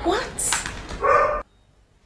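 A woman's voice making short wordless sounds with rising pitch, cut off abruptly about one and a half seconds in.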